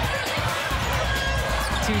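Basketball dribbled on a hardwood court, under background music and the general sound of the arena and broadcast voices.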